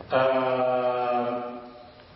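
A man's voice holding one long, steady chant-like note that fades away after about a second and a half.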